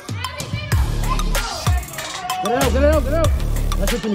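Trap music with a deep bass note that slides down in pitch about once a second under quick, even hi-hat ticks.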